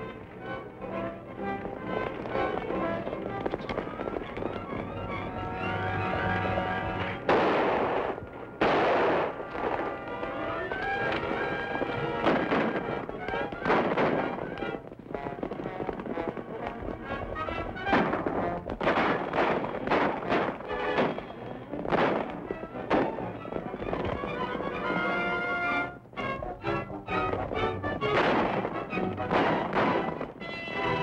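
Orchestral film score playing under a chase, with sharp bangs cutting in at intervals. The loudest are two about seven and nine seconds in, and several more come between about eighteen and twenty-two seconds.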